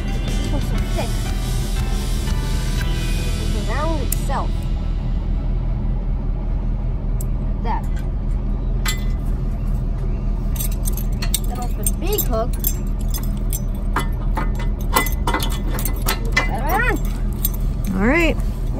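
Steel safety chains clinking and jangling in quick, irregular clicks as they are hooked onto a pickup's receiver hitch, starting about halfway through, over steady background music.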